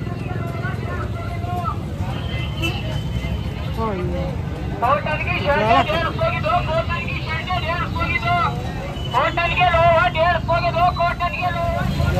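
Busy street-market hubbub over a steady low rumble. From about four and a half seconds in, a loud voice calls out in two stretches, sliding up and down in pitch like a stall vendor hawking goods.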